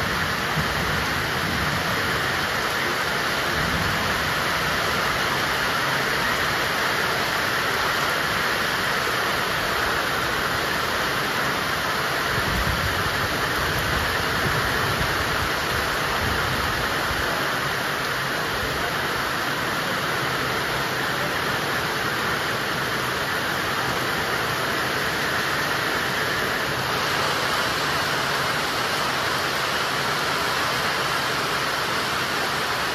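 Heavy monsoon rain pouring steadily, an even, unbroken hiss of water.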